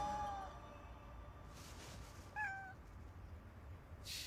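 A domestic cat meows once, a short call a little over halfway through.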